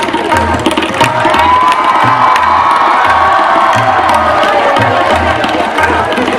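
Many voices singing a devotional aarti hymn with long held notes, over a steady drumbeat of about two beats a second.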